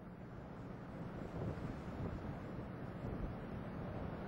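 Steady rumbling roar of the ascending Space Shuttle's rocket engines, far off and carried on the launch broadcast's audio, with no distinct events.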